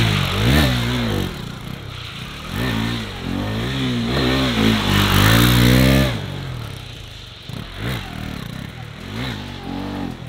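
KTM RC 390's single-cylinder engine revving hard, its pitch climbing and falling again and again as the bike is throttled through a drift attempt. About six seconds in the engine drops back to a quieter run with a few short blips of throttle.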